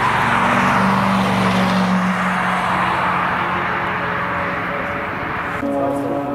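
A sports car's engine running under power as the car passes along the race track, with tyre and wind noise. The engine holds a fairly steady pitch, is loudest about a second in and slowly fades. Near the end the sound cuts abruptly to another car's engine with a different note.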